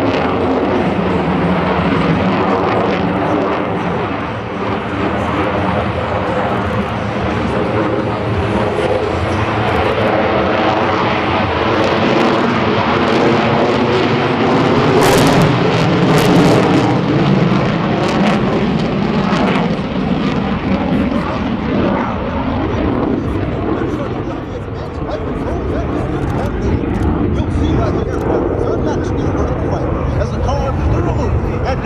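Jet noise from an F-22 Raptor's two F119 turbofan engines as the fighter manoeuvres overhead. The sound is loud and continuous, swells to its loudest about halfway with a burst of crackle, and eases a little near the end.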